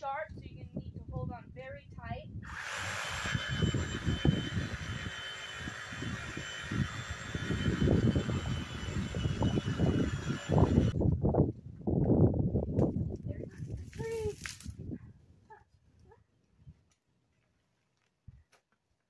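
Cordless Porter-Cable reciprocating saw with a wood pruning blade running as it cuts through a pine trunk: a steady whine for about eight seconds from a couple of seconds in, over rattling and rustling. Branches rustle and thump as the tree gives way, and a short final burst of the saw comes near 14 seconds as the blade binds in the cut.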